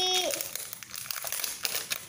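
Plastic wrapping of an L.O.L. Surprise ball being pulled off and crumpled by hand, a dense rapid crinkling. A child's held sung note trails off at the very start.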